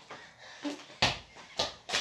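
A football bouncing on hard ground: three thumps about a second in, coming quicker and quieter each time as the ball settles.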